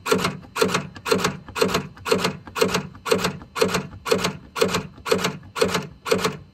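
Tesla Model 3/Model Y frunk latch mechanism being worked by hand through its release lever, clicking open and shut in a steady rhythm of paired clicks about twice a second. The latch has just been cleaned and lightly greased and is moving freely.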